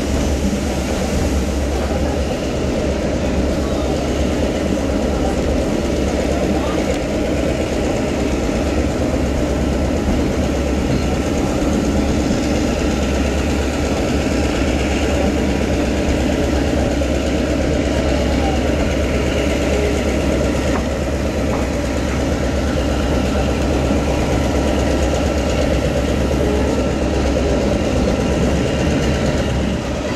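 Diesel-hauled passenger train running steadily, heard from one of its coaches: a constant low drone from the diesel locomotive over the rolling noise of the coaches on the rails.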